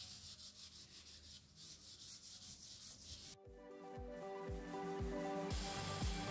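Cloth dampened with isopropyl alcohol wiped over a sanded epoxy resin surface, in soft repeated rubbing strokes. About halfway through, background music with a steady beat cuts in.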